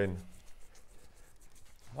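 Faint scratchy rubbing as cord is wound by hand onto a small plastic kumihimo bobbin.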